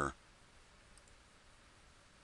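A faint click or two from a computer mouse about a second in, against near-silent room tone.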